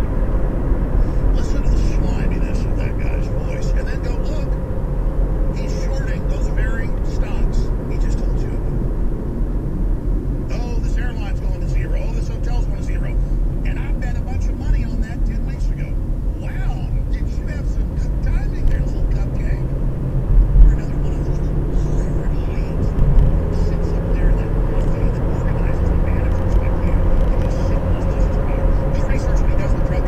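Road and engine noise inside a moving car's cabin: a steady low rumble with a faint steady hum, and a brief low thump about two-thirds of the way through.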